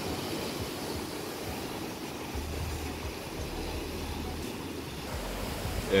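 Steady wash of ocean surf on a rocky shore, with a low rumble joining about halfway through.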